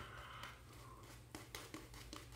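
Very faint brushing of a shaving brush working lather over a stubbly face, with a few soft ticks in the second half. It sits over a low steady room hum, close to silence.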